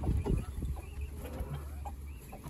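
Broody quail hen clucking on her nest, a string of short calls over a low steady hum.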